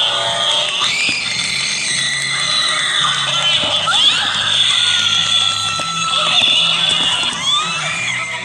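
Spooky Halloween sound-effect track from an animatronic prop: held low music notes that shift pitch partway through, with screams and wailing, gliding shrieks over them.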